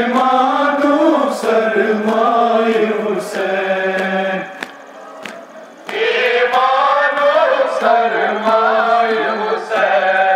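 Male voices chanting a Kashmiri noha, a Shia mourning lament, in long drawn-out phrases. One phrase breaks off about four and a half seconds in, and after a pause of about a second and a half a second phrase begins.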